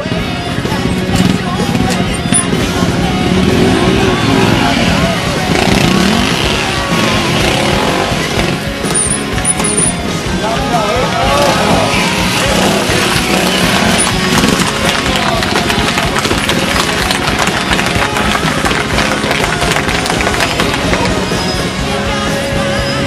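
Trials motorcycle engine running on a rocky climb, heard under spectators shouting and calling out.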